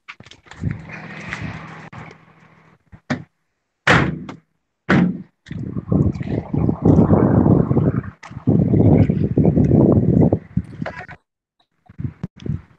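Knocks, bumps and rustling from a phone being handled and carried, picked up by its own microphone. The sound comes in chunks that cut off suddenly, with a sharp knock about four seconds in and a long stretch of rubbing and thuds after it.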